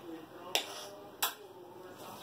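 Two short sharp clicks about 0.7 s apart: a wall light switch being flipped to turn off the room light.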